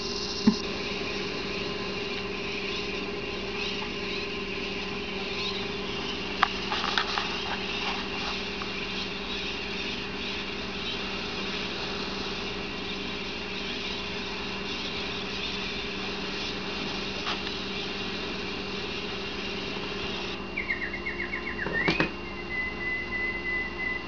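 A steady low hum with a few faint clicks, then in the last few seconds a budgerigar's quick rising chirps and a held whistle, played through laptop speakers.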